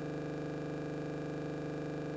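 Steady electrical hum with a stack of overtones, unchanging in pitch and level.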